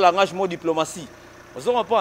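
A man speaking in French, in short phrases with a brief pause in the middle.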